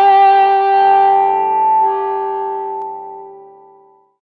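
Overdriven electric guitar played through a cocked-wah Q-filter pedal (a Rullywow CockIt! build) and an OCDv3-clone overdrive: a last note is held and rings out, slowly fading away to nothing by the end.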